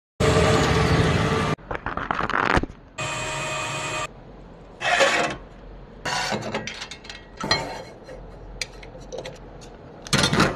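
Automatic friction feeder running in two abruptly cut stretches with a steady tone, then sheets of paper rubbing and scraping against the steel hopper as a stack is loaded and squared by hand.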